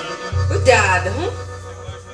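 Live forró band playing through a PA: a held low bass note rings for over a second and stops near the end, with a short voice phrase over the microphone, the music fading as the song winds down.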